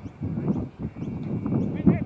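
Outdoor ambience at a cricket ground: an uneven, pulsing low rumble with faint distant voices, and one sharp knock near the end.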